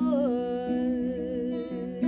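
A woman's voice, without words, slides down onto one long note with a slight vibrato, over acoustic guitar notes picked underneath.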